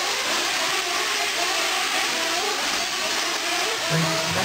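Several 1/8-scale nitro RC truggies racing, their small two-stroke glow-fuel engines whining with overlapping rising and falling pitch as they rev up and back off.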